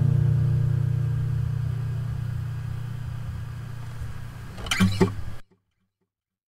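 Final acoustic guitar chord ringing out and slowly fading in a small, close space. Near the end come a couple of short handling noises, then the sound cuts off abruptly.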